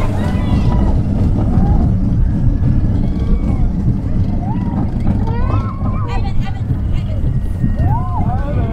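Expedition Everest roller coaster train running along the track: a loud, steady rumble with wind on the microphone. Riders' voices rise and fall over it, most about five to six seconds in and again near the end.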